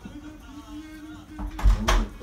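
Two loud knocks near the end: a wooden spatula striking a frying pan as it goes back in to scoop. A steady low tone runs underneath beforehand.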